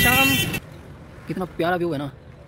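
Street noise with passing traffic and voices. It cuts off abruptly about half a second in, giving way to a quiet background where a person's voice speaks briefly near the end.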